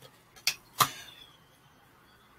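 Two sharp clicks close together, the second the louder, from tarot cards being handled and laid down.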